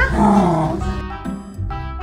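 A hungry long-haired dachshund gives a drawn-out, wavering vocalization while begging for its food bowl, lasting under a second. Background music follows.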